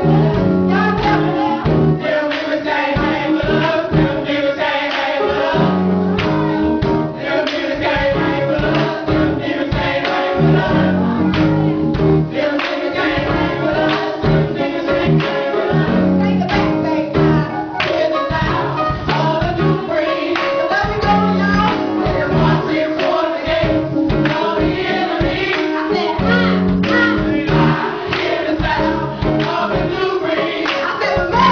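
Live gospel praise and worship music: a group of singers, women's voices among them, singing together with instrumental accompaniment and a steady beat.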